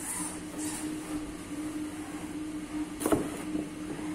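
A steady machine hum, with a single sharp knock of a kitchen knife on a cutting board about three seconds in as the knife starts into a bitter gourd.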